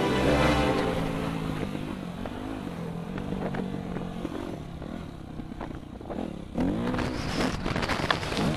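Yamaha YZ250F dirt bike's four-stroke single-cylinder engine revving up and down while riding, its pitch rising and falling with the throttle. It is loudest at first, eases off in the middle, then picks up again with a falling-then-rising rev near the end.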